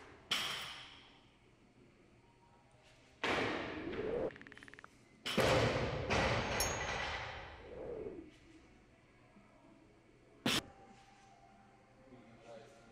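A 60 kg barbell loaded with bumper plates thudding down onto a rubber lifting platform several times. The two heaviest landings come about three and five seconds in, the first followed by a brief rattle of the plates on the sleeves, and a short sharp knock comes near the end.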